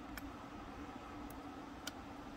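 Three faint, short clicks from a hot glue gun being handled and worked, over a low steady hum.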